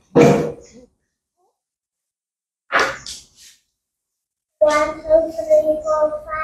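A young child's voice: two short, sharp vocal bursts a couple of seconds apart, then a sustained sing-song voice at a steady pitch starting near the end.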